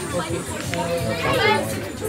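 Market chatter: people talking at a stall, with music playing underneath.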